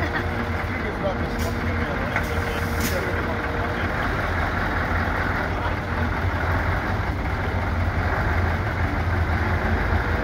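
Scania truck tractor unit's diesel engine running as it moves slowly past, a steady low rumble, with two short hisses about one and a half and three seconds in.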